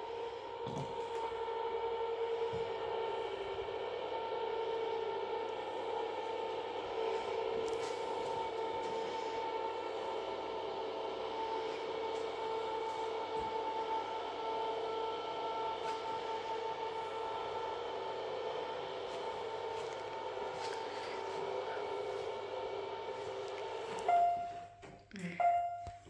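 Electric lifting motor of a Raizer lifting chair running with a steady drone as it raises the seat from the floor to its highest position, stopping about 24 seconds in. Two short beeps follow near the end.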